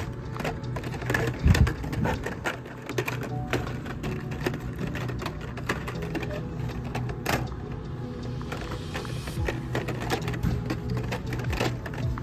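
Plastic blister-pack cards of toy cars clicking and rattling against each other and the metal peg hooks as they are flipped through by hand, over steady background music.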